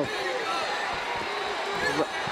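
Gloved punches landing on a grounded fighter as a few dull thuds, the loudest near the end, over an arena crowd shouting and cheering.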